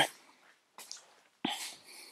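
Mostly quiet, then a sharp click about a second and a half in as the car's door latch is released to open the door.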